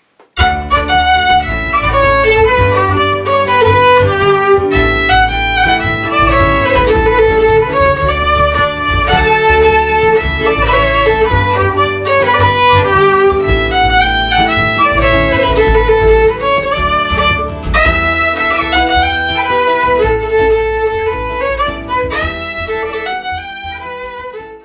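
Fiddle playing a lively melody over a low bass accompaniment. The music fades out near the end.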